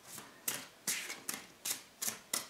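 A tarot deck being shuffled by hand: five short, evenly spaced shuffling strokes, about two and a half a second.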